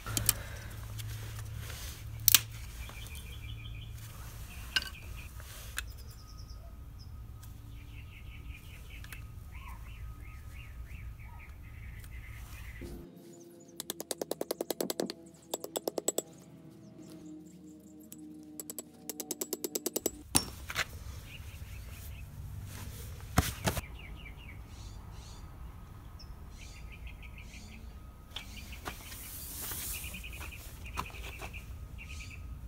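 Hammer blows driving wooden stakes into packed dirt around a loose steel pipe post to wedge it tight. They come as three runs of rapid, evenly spaced strikes in the middle, with a few sharp single knocks before and after.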